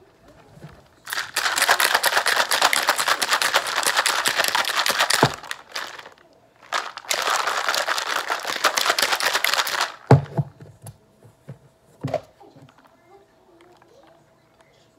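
A plastic shaker bottle of protein shake being shaken hard, the liquid sloshing and rattling inside, in two long bouts with a short pause between. A couple of single knocks follow.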